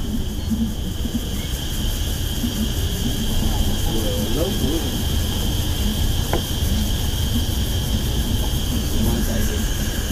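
Steady low engine and road rumble heard inside a coach bus moving slowly in heavy traffic, with a steady high-pitched whine over it.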